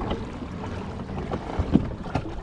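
Wind buffeting the microphone over water lapping against a kayak's hull, with a single knock near the end.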